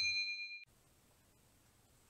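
Notification-bell 'ding' sound effect of a subscribe animation: a clear chime of a few high ringing tones that decays and cuts off abruptly about two-thirds of a second in.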